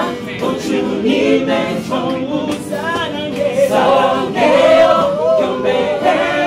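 A group of men and women singing a gospel worship song together, several voices at once.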